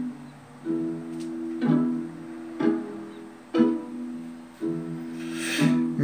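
Guitar playing slow plucked chords, six of them about a second apart, each left to ring and fade before the next.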